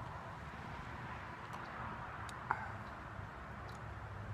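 Quiet outdoor background: a steady low rumble of wind on the microphone, with one faint sharp click about two and a half seconds in.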